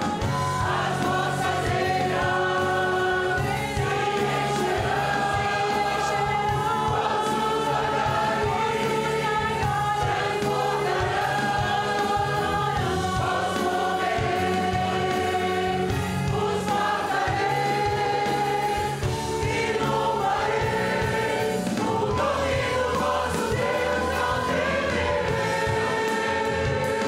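Church congregation singing a hymn together, with long held notes, over a steady low accompaniment.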